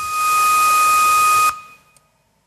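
Television static: a loud hiss of white noise with a steady high tone over it, cut off about one and a half seconds in and fading quickly to silence as the picture is switched off.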